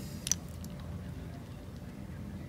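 Faint room noise with one brief click about a third of a second in, from a gloved hand handling a painted plastic crankbait.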